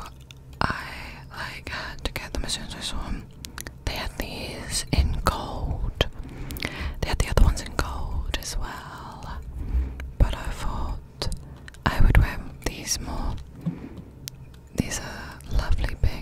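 Soft whispering very close to a microphone, with wet mouth clicks and several low puffs of breath on the mic.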